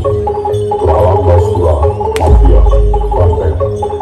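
Bantengan accompaniment music playing loudly: ringing gamelan-style metal percussion with a steady held tone over a heavy, repeated bass drum, and one sharp crack about two seconds in.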